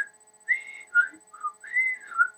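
A woman whistling a tune through pursed lips: a run of single clear notes, some sliding up or down in pitch, with a longer arching note held near the end.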